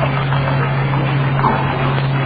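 Steady hiss with a constant low hum underneath: the background noise of an old lecture recording in a pause between phrases.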